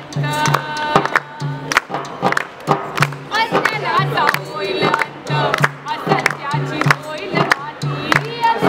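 A woman singing a protest song in Marathi to her own accompaniment on a hand-played frame drum, which keeps a steady beat of about three strokes a second.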